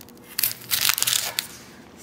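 Whole onion handled on a wooden cutting board: a short run of dry crinkling and crunching bursts, starting a little way in and ending before the last half second.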